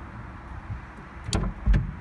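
Steady low rumble of a car cabin with the engine idling while the car stands stopped, then a sharp click and a heavy thump near the end.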